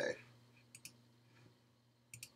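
Two faint, short clicks in quick succession about three-quarters of a second in, over a faint steady low hum, after the end of a man's spoken word.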